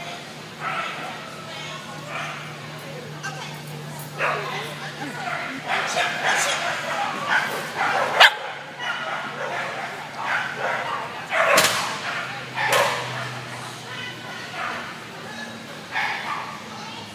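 A schnauzer barking in short, sharp bursts several times from about four seconds in, over people's voices.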